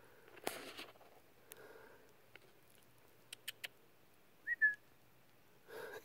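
Quiet outdoor stillness with a brief rustle early on and a few faint clicks, then a short, high two-note whistle about four and a half seconds in.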